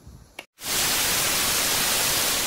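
A short click and a moment of dead silence, then about half a second in a loud, steady white-noise hiss starts and holds: a noise-sweep effect marking the transition into the set.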